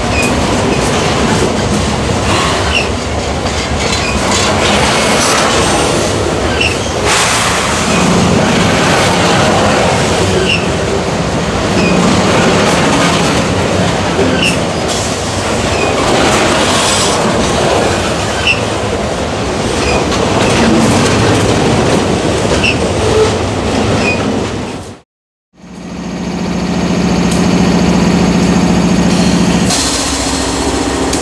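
Freight train of hopper cars rolling past at close range, a loud continuous rumble of wheels on rail with clicks as the wheels cross the rail joints. After a sudden cut near the end, a steady diesel locomotive engine hum.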